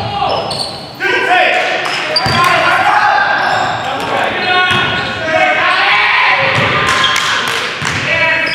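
A basketball bouncing on a hardwood gym floor during play, with players' voices echoing in the hall.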